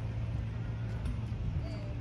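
Steady low hum of outdoor background noise, with faint distant voices.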